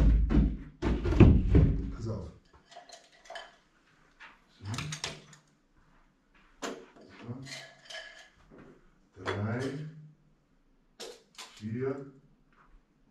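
A plastic storage box handled and set down on its side on a carpeted floor, giving a few dull thunks in the first two seconds, with short bits of men's talk after.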